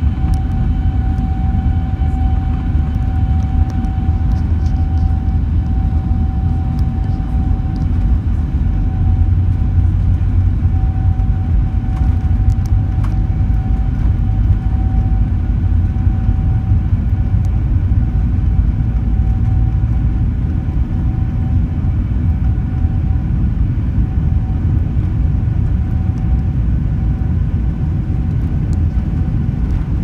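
Cabin noise of a Boeing 747-8 rolling on the ground, heard from a window seat on the upper deck. A loud, steady low rumble from the wheels and airframe runs under a steady high whine from its GEnx engines.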